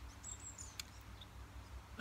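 Faint, high-pitched bird chirps, a couple of short falling notes about a third of a second in, over a low steady rumble.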